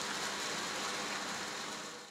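Steady rushing hiss of outdoor ambience, fading slightly near the end.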